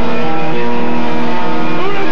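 Live rock band playing loud, with distorted electric guitar chords held steady, and singing coming back in near the end.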